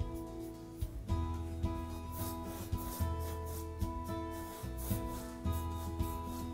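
Paintbrush loaded with acrylic paint rubbing across a stretched canvas in repeated short, scratchy strokes, over soft background music of held chords.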